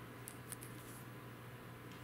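Quiet room tone with a low steady electrical hum, and two tiny faint ticks about a quarter and half a second in.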